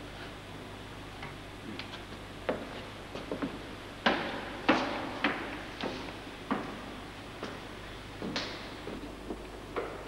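Footsteps climbing a wooden staircase, one knock per step about every half to three-quarters of a second, each echoing briefly in a large hall.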